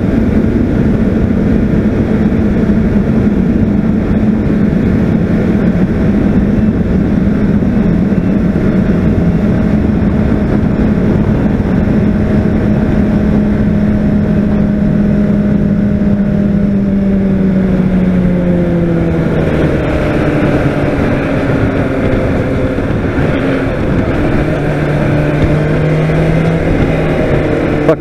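Honda CBR600RR inline-four engine running at a steady cruise, with wind noise on the microphone. About two-thirds of the way through, the revs fall as the rider eases off, and the engine settles to a lower steady note.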